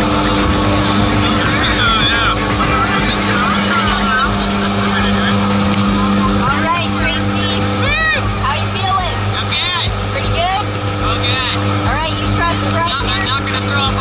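Steady drone of a jump plane's engines heard from inside the cabin during the climb, with music and voices over it.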